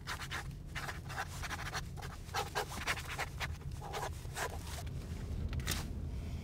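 Pencil scratching across paper in a run of quick, irregular strokes, over the steady low rumble of a car's cabin on the road.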